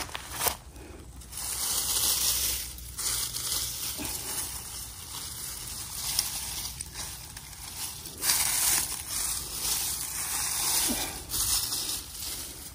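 Dry fallen leaves and grass rustling and crackling as a hand pushes through and parts them, in several bouts.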